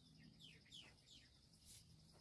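Faint bird calls: a quick run of four or five short descending chirps in the first second, over a steady faint high-pitched insect drone, with a brief scratch near the end.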